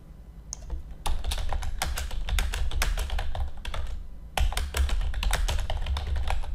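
Typing on a computer keyboard: a quick run of keystrokes entering a line of text, starting about a second in, with a short pause about four seconds in before the typing goes on.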